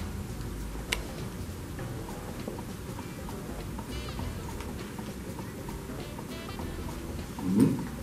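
Quiet background music under the scene, with a single click about a second in and a short voice sound near the end.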